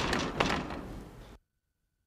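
A loud slam-like impact, with a second sharp knock about half a second later, followed by noisy clatter that cuts off abruptly about a second and a half in.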